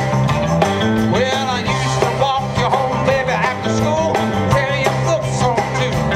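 Live band performing an upbeat country-rock song: drums, bass, electric and acoustic guitars and keyboard, with singing over the top from about a second in.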